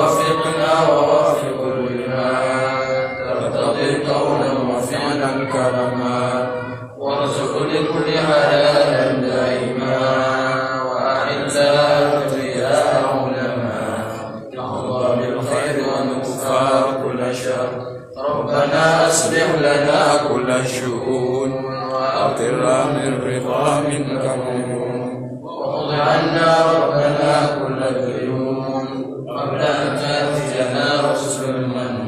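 Male voices chanting an Arabic supplication in a long, slow, sustained melody, broken by a few short pauses for breath.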